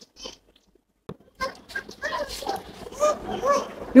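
A small child's high voice making short rising-and-falling sounds, softer than the adult talk around it.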